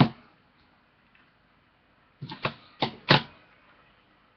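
Handling noise: a click at the start, then after about two seconds of quiet a quick run of four or five knocks and clicks as a hard plastic card holder is handled close to the microphone.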